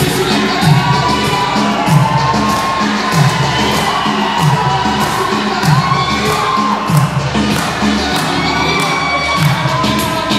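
Reggaeton dance music with a steady thumping beat, under an audience cheering, whooping and shouting throughout.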